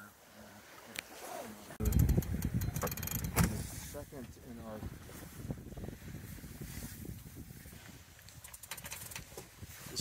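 Low rumbling wind noise on the microphone aboard a sailboat, starting suddenly about two seconds in, with a few knocks and faint crew voices.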